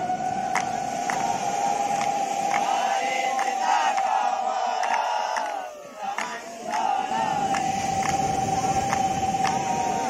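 A conch shell blown in long steady notes. It breaks off for a breath about halfway and sounds again about a second later. Under it a bell is struck at a steady beat, about three strikes every two seconds, with the crowd's voices calling out.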